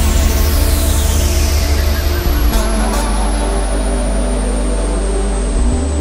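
Industrial techno at 150 BPM in a breakdown without the kick drum: a heavy sustained bass drone and held synth tones, with a high hiss slowly closing down. Two sharp hits come about two and a half and three seconds in.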